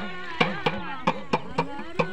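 A small hand drum struck in a quick, steady rhythm of about three strokes a second, with a voice singing a folk melody over it.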